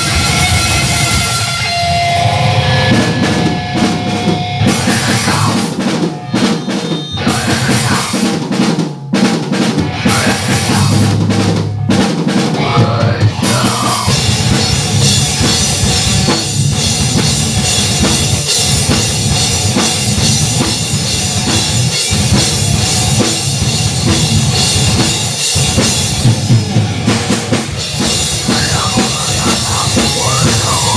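Live grindcore/metal duo of electric guitar and drum kit playing loud. The first half is choppy, with short stops between hits, and the playing runs on without breaks from about halfway through.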